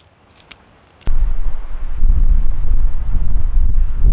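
Wind buffeting the microphone: a loud, rough low rumble that starts abruptly about a second in, after a near-silent second with one faint click.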